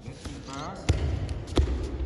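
Thuds of bare feet and a body hitting foam mats during an aikido throw and breakfall: two sharp impacts about two-thirds of a second apart, in a large gym.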